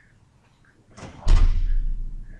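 After a quiet second, a sudden heavy thump with a deep boom comes about a second and a quarter in, then dies away over about a second.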